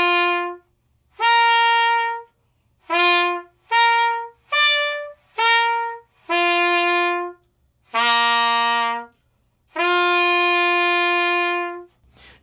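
Trumpet playing a flexibility (lip slur) exercise in "honking" articulation: each note is started with breath alone, a "who" attack with no tongue, and detached from the next. Nine notes step up and down between the harmonics of one fingering, with the lowest note near the end and a long held note to finish.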